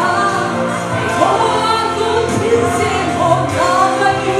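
A woman singing live at full voice into a handheld microphone, amplified through a PA, over instrumental backing music.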